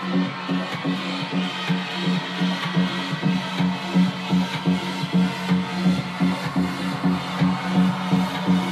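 Electronic dance music played loud over a club sound system from a DJ's decks, a pulsing synth note repeating about twice a second over a steady beat.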